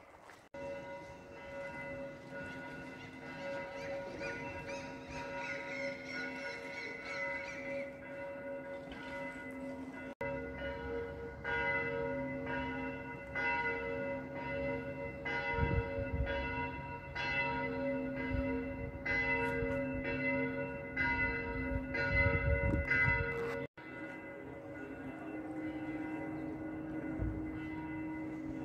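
Church bells ringing, their tones hanging on steadily, with a run of repeated strikes through the middle; near the end the ringing shifts to different, lower-sounding tones.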